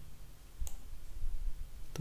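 Two sharp clicks from a computer mouse, about a second and a quarter apart, over a faint low rumble.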